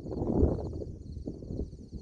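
Wind buffeting the microphone outdoors: an uneven, gusting low rumble with no clear sound above it.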